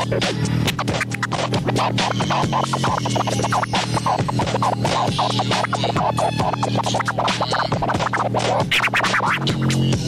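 Vinyl scratching: a record is pushed back and forth by hand on a turntable, the sound chopped in and out with the fader, in quick rising and falling glides over a steady hip-hop beat.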